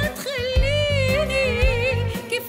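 A woman singing a long, wavering held note over instrumental backing with a steady beat.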